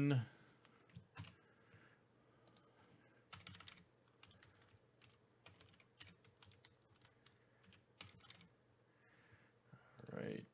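Typing on a computer keyboard: short, irregular runs of faint key clicks with pauses between them.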